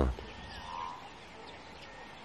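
Quiet outdoor ambience with a faint, short animal call about half a second in.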